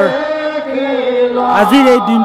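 A voice chanting Assamese devotional naam (naam kirtan), holding one long steady note and then breaking into a higher, louder phrase near the end.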